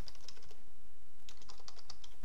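Typing on a computer keyboard: a few keystrokes, a pause of nearly a second, then a quicker run of keystrokes.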